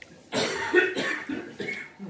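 A person coughing, starting abruptly about a third of a second in and going on in further bursts.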